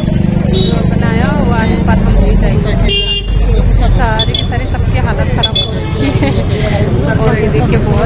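Roadside crowd chatter with vehicles running nearby and a steady low engine hum in the first couple of seconds. A brief car horn toot about three seconds in.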